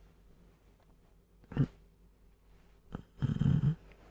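A man breathing in his sleep: a short snort about a second and a half in, then a longer, low snore a little after three seconds.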